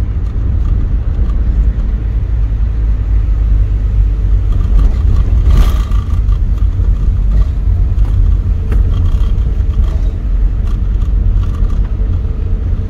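Inside a car's cabin while driving on an unpaved dirt road: a steady low rumble from the engine and tyres, with scattered light knocks from the road surface, one stronger about five and a half seconds in.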